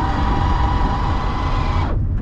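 City Transformer CT-1 folding mechanism's electric actuator whining at a steady pitch as the car narrows its track from 1.4 m to 1 m wide; the whine cuts off just before the end. A low rumble runs underneath.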